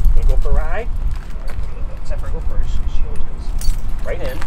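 Light metallic jingling of dog collar and leash hardware while two leashed dogs are handled, over a steady low rumble, with a brief voice sound about half a second in.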